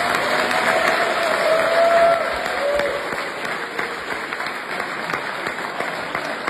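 Audience applauding, a dense clatter of clapping hands that peaks about two seconds in and then eases a little. One long held call from the crowd sounds over it in the first three seconds.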